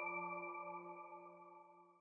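Ringing tail of a logo sting's music: a chord of several steady held tones fading away over about a second and a half.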